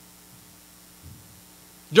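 A steady low electrical hum, with a faint soft sound about a second in. A man's voice starts talking right at the end.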